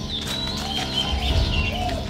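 Birds chirping: a run of short, high calls over a steady low background rumble.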